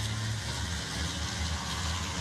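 1,000 bhp racing trucks' heavy diesel engines running at race speed on the track, a steady low engine drone.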